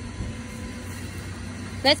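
A steady low motor hum and rumble in the background, with no sudden events; a voice starts right at the end.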